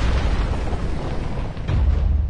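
Trailer sound-design boom: a sudden loud noisy blast that carries on as a deep rumble, with a second surge near the end.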